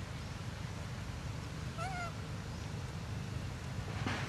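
A macaque gives one short, high coo about halfway through, rising then dipping slightly, over a steady low rumble.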